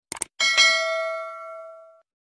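A quick double click, then a bright bell chime that rings and fades away: the stock sound effect of a cursor clicking a YouTube notification-bell icon in a subscribe animation.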